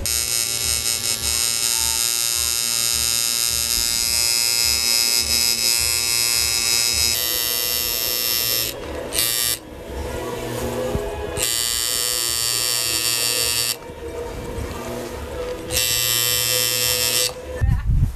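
Electric tattoo machine buzzing steadily as the needle works on skin. The buzz drops away briefly a few times and stops just before the end.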